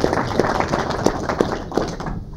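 Applause from the seated council members: a dense patter of many hands with some loud single claps close to the microphone, dying away at the end.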